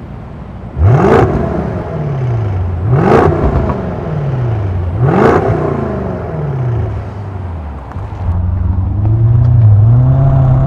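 Range Rover P615 SV's twin-turbo V8 through a QuickSilver valved sport exhaust with the valves open. It is revved three times about two seconds apart, each rev rising sharply and falling away. Near the end it pulls away under load, the engine note climbing steadily.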